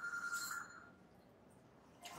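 A faint, single steady electronic tone, like a phone ring, lasting under a second at the start.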